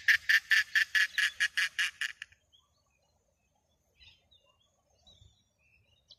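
Australasian darter giving a rapid, rattling clicking call, about seven clicks a second, which stops a little over two seconds in. It is a warning at a person's close approach.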